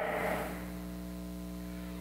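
Steady electrical mains hum with a ladder of evenly spaced overtones. The reverberation of a man's voice dies away in a large hall over the first half second.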